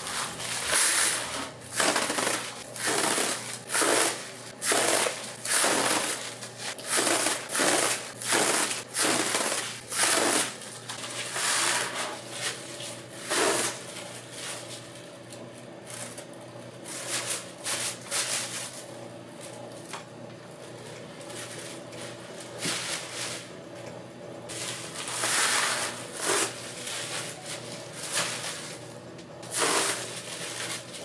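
Honeycomb kraft paper wrap crinkling and rustling as it is pulled off a dispenser roll and scrunched by gloved hands. It comes in loud bursts about once a second, thins out to quieter rustling about halfway through, and picks up again near the end.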